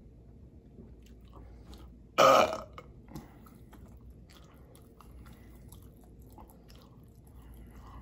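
A man's loud burp about two seconds in, lasting about half a second, after a drink from a can. Faint wet mouth and lip-smacking clicks follow.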